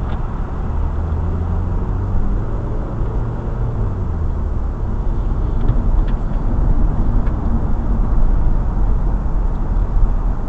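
A car driving at freeway speed: a steady low rumble of road and engine noise, with an engine note that rises slightly in the first few seconds.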